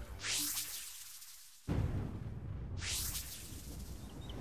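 Two whoosh sound effects, about two and a half seconds apart, used as a scene transition, with music coming in suddenly between them.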